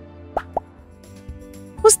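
Two quick cartoon plop sound effects, short blips about a fifth of a second apart, over soft background music.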